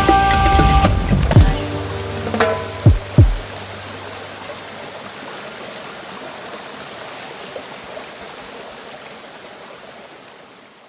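Turntable scratching over a held chord and bass, with a few last sharp scratches about three seconds in. The music then stops, leaving a steady rushing hiss that slowly fades.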